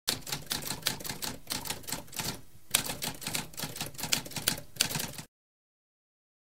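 Typewriter keys clacking in a quick, uneven run, with a short break about two and a half seconds in; the typing stops abruptly a little after five seconds.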